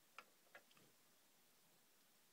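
Near silence, with two faint clicks in the first second from fingers handling the small plastic toy missile launcher truck.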